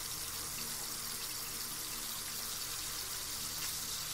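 Onion slices sizzling in hot oil in a wok: a steady hiss with faint scattered crackles.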